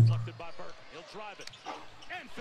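Quiet game audio from a televised basketball game: a ball being dribbled on the hardwood court, with short squeaky chirps, after a man's drawn-out 'ooh' fades out in the first half second.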